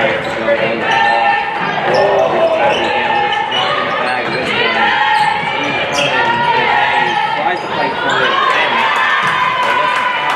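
Basketball dribbled on a hardwood gym court, repeated sharp bounces during live play, with voices echoing in the large hall.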